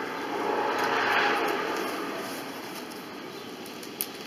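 A passing vehicle: a broad rushing noise that swells about a second in and then slowly fades away.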